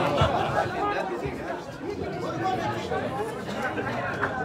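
Many overlapping voices of spectators chattering and calling out at once.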